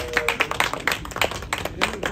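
A small group of people clapping by hand, dense and uneven. A drawn-out high vocal call fades out just after the start.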